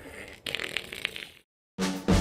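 Rustling and clicking from a handheld camera being moved against the microphone, then a short dead gap and music with a drum beat starting near the end.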